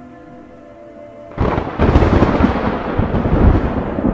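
A steady held music chord, then about a second and a half in a loud, rolling rumble of thunder comes in, laid over the soundtrack as an effect.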